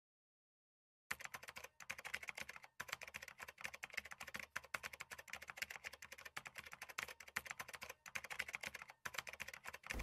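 Quiet, rapid typing on a laptop keyboard, starting about a second in and running in quick clicks with a few short pauses.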